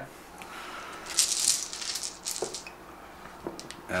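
Order dice rattling in a dice bag as a hand shakes it and draws out the next die: a burst of rattling about a second in, a shorter rattle, then a light click.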